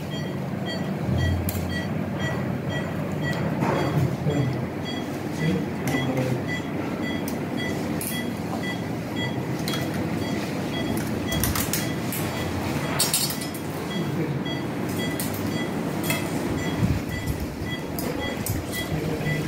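Operating-theatre patient monitor beeping at a regular beat, over a steady background of room noise, with scattered light clicks and clinks.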